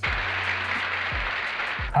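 Large audience applauding: a steady, dense clatter of many hands clapping.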